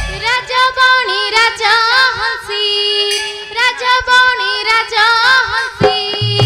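A young girl singing solo: a wavering, ornamented melody line with the pitch bending up and down on held notes. The drums stop as she starts and come back in right at the end.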